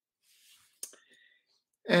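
A pause in a man's talk: a faint breath and a small mouth click, then he starts speaking again just before the end.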